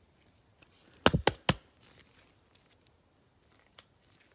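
Three quick knocks of a hard plastic card top loader against the tabletop, about a fifth of a second apart, followed by a few faint light ticks of handling.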